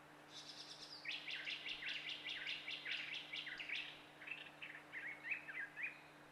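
A songbird singing a fast run of short chirping notes, high-pitched at first and then stepping down lower, over a faint steady low hum.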